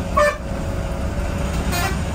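Two short vehicle horn toots about a second and a half apart, over the steady low rumble of a bus engine in city traffic.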